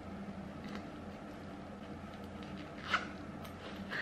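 Quiet handling of a plush fabric keychain pouch as it is rolled up and zipped shut, over a steady low room hum. A short sharp click about three seconds in and a softer one at the very end.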